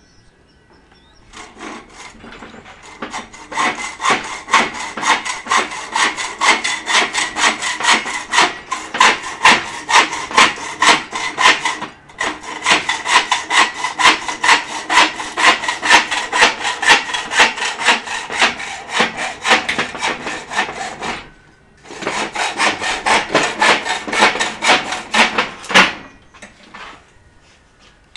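Hacksaw cutting through a steel pipe clamped in a pipe vise, in quick even strokes, about three a second. The sawing stops briefly near the end, then starts again.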